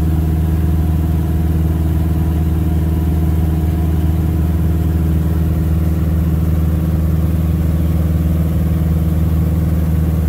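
Piper Super Cub's piston engine and propeller in steady cruise, heard from inside the cockpit as an even, unbroken drone with a deep pitched hum.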